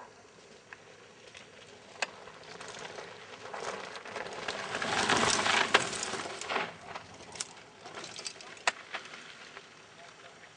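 Mountain bike descending a dirt trail: tyre and trail noise that swells to a peak midway and then eases, with sharp rattling knocks from the bike over rough ground.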